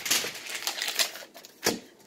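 Rapid soft clicking and rustling at a table, fading out, then a single knock on the wooden tabletop near the end.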